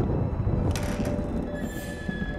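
A heavy wooden panelled door creaking open, its hinges giving a drawn-out squeal.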